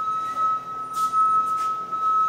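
A steady, unbroken high-pitched tone of a single pitch, with a few faint rustles over it.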